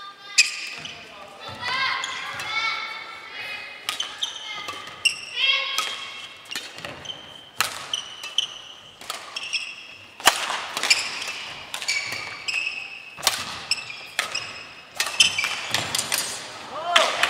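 Badminton rally on a wooden gym floor: repeated sharp racket strikes on the shuttlecock, with short high-pitched squeaks of court shoes on the boards between the shots.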